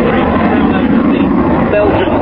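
A displaying jet fighter's engine makes a steady, dense noise overhead, with indistinct voices faintly underneath.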